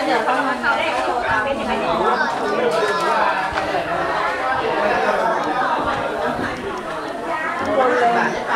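Several people talking at once: overlapping conversation and chatter, with no single voice standing out.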